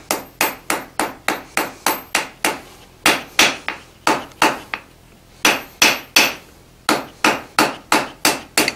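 Hand hammer striking a red-hot iron bar on the anvil face, about three sharp blows a second, with two brief pauses a little after the middle, as the forge-welded end is rounded up.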